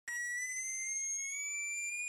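Piezo disc driven by the home-built function generator, sounding a shrill steady buzzer tone that rises slowly in pitch.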